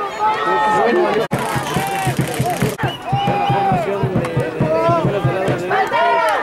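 Several voices overlapping, people on the sideline and in the stands talking and calling out, with two brief sharp dropouts in the sound about a second and just under three seconds in.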